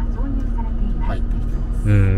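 Steady low hum of the Mercedes-Benz G400d's 3.0-litre inline-six diesel idling, heard from inside the cabin, with faint voices over it.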